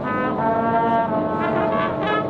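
High school marching band's brass section playing slow, sustained chords that change every second or so.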